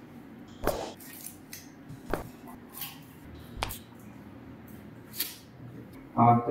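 A few short soft clicks and rustles, four in all about a second and a half apart, from latex-gloved hands gripping and moving a patient's arm, over a faint room hum.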